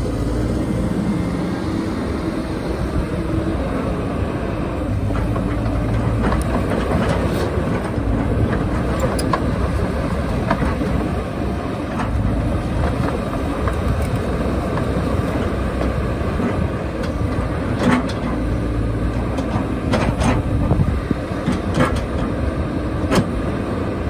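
Caterpillar 312D L excavator's diesel engine running steadily while the boom and bucket are worked on the hydraulics. A few sharp clanks come in the last several seconds.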